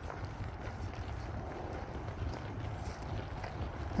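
Quiet outdoor ambience: a steady low rumble with faint wind noise on the microphone.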